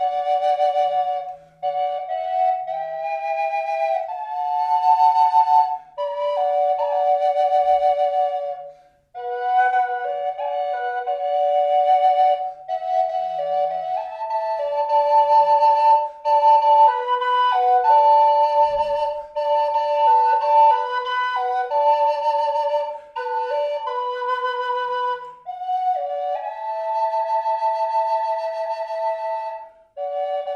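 Brazilian rosewood double Native American flute in mid B played as a melody in two voices at once, both chambers sounding together and shifting in step-wise walking harmonies. The phrases are broken by short pauses for breath.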